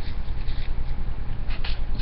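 Faint rustling and mouth sounds as coffee grounds are licked off a coffee filter, over a steady low hum.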